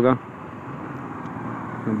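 Steady rushing noise of a motorcycle being ridden in city traffic, heard from the rider's seat: wind, tyre and engine noise mixed together, growing a little louder toward the end.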